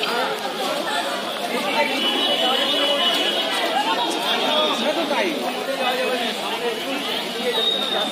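Many voices talking over one another: a crowd of bystanders chattering steadily, with no single voice standing out.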